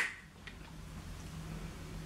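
A brief hiss from a fragrance mist pump spray bottle right at the start, then quiet room tone with a low steady hum.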